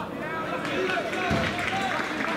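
Footballers' voices shouting and calling to each other across the pitch during open play, with one dull thump a little past halfway.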